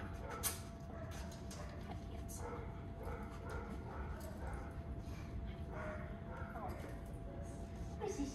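Faint, soft whines and small vocal sounds from a dog being cuddled, over a steady thin hum, with one sharp click about half a second in.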